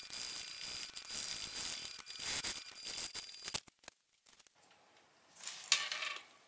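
Electric sewing machine running slowly while top-stitching a fabric wallet, with a steady high-pitched whine. It stops about three and a half seconds in, and near the end there is light handling noise.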